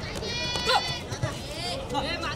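Several high-pitched voices shouting and calling over one another, with one louder cry that falls in pitch a little past a third of the way in.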